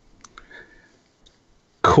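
A short pause in conversation: two or three faint clicks in the first half-second, then quiet, then a man's voice begins near the end.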